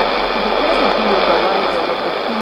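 Weak shortwave AM broadcast from a Sony ICF-2001D receiver's speaker tuned to 15120 kHz: a faint talking voice buried under steady static hiss, with a narrow, muffled sound.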